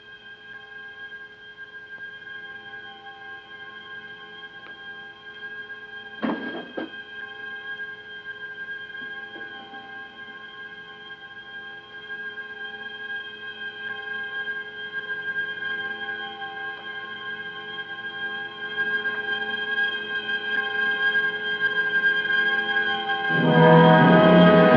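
Orchestral film score: a long, held chord that slowly grows louder, with a brief sharp hit about six seconds in. Loud brass comes in right at the end.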